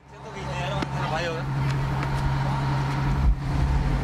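Boat engine running with a steady low drone, fading in over the first half second. Faint voices sound over it about a second in.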